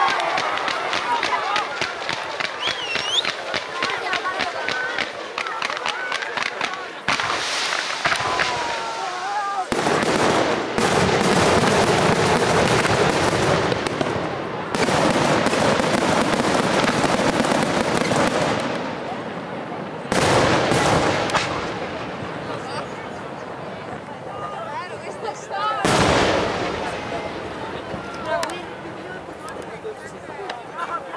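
Fireworks display: a quick run of sharp launch reports at first, then long stretches of dense, continuous bursting through the middle, and a few single loud bursts later on.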